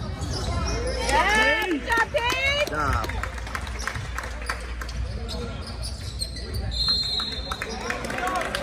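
Basketball game sounds in a gym: a ball bouncing on the hardwood floor, with shouting voices about a second in and a short, high, steady tone near the end.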